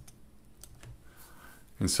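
A few faint, scattered computer keyboard clicks, followed by a man's voice beginning to speak near the end.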